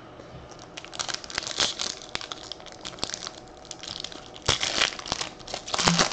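Foil wrapper of a 2017 Topps Series 1 baseball card pack being torn open and crinkled by hand: a run of crackles and rips that starts about a second in, with the loudest ripping from about four and a half seconds on.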